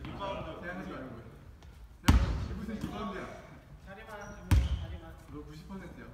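A basketball bounced twice on a wooden gym floor, about two and a half seconds apart. Each bounce is a sharp, echoing slap, over players' voices.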